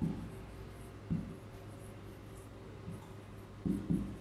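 A marker writing on a clear board: the tip rubs across the surface, with a few soft taps as strokes begin and end.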